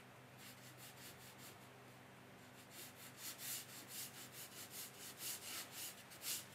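Watercolour brush strokes on paper: quick short brushing strokes, faint at first and louder and more frequent from about halfway, about three to four a second, as ripple reflections are painted in.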